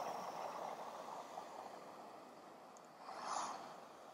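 Ozark Trail butane backpacker stove being lit at a low setting: a faint, fading gas hiss with a brief soft whoosh about three seconds in.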